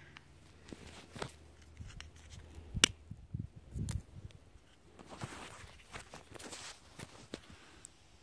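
Scattered plastic clicks and rustling as the snap-fit clips of a small power bank's plastic case are pried and pulled apart, with one sharp snap about three seconds in. A dull bump of handling follows just before four seconds.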